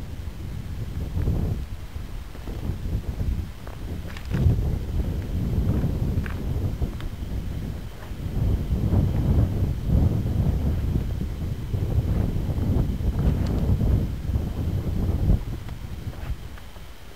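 Wind buffeting the camera microphone: a loud, uneven low rumble that rises and falls in gusts, with a few faint clicks.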